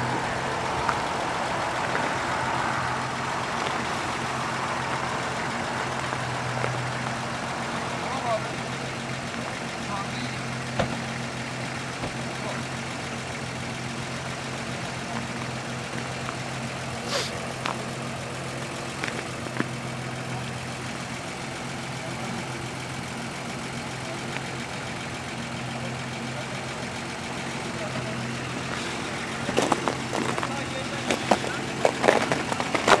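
Off-road SUV engines idling in a line, a steady low hum, with a few scattered clicks and faint voices.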